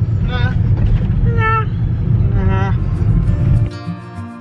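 Steady low road and engine rumble inside a moving car's cabin, with a few short bits of voice over it. Near the end the rumble cuts off suddenly and background music takes over.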